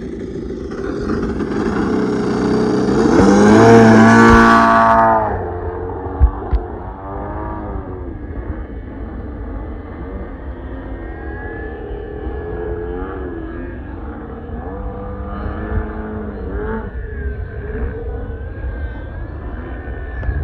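RC aerobatic plane's motor and propeller in flight. The pitch rises to a loud, close pass a few seconds in, then drops, and afterwards wavers up and down as the throttle is worked. The throttle curve is badly set and spikes above half throttle, so the RPM jumps sharply.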